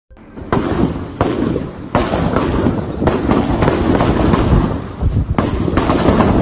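Heavy gunfire: sharp shots at irregular intervals, roughly two a second, over a constant crackle of further shots, starting about half a second in.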